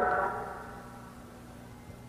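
A man's amplified voice dies away in a large arena's reverberation over about a second, leaving a quiet lull of hall ambience.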